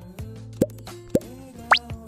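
Soft background music with cartoon 'bloop' sound effects: three quick rising plops, the last one sweeping highest and loudest, laid over the squeezing of a springy steamed bun.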